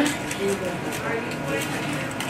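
Indistinct background chatter of children's voices in a busy room, with no single clear voice close by.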